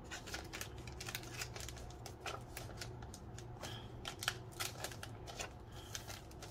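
Paper sheets and stickers being handled: a string of small, crisp, irregular rustles and taps.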